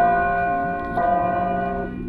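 A bell-like chime sounding twice, about a second apart: each stroke starts suddenly on a steady pitch and fades.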